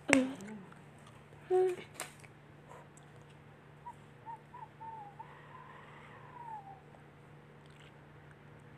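A person's wordless voice sounds. It starts with a loud, short cry that falls sharply in pitch. About a second and a half in comes a brief hum that drops in pitch, then a few faint short hummed notes and a soft rising-and-falling hum.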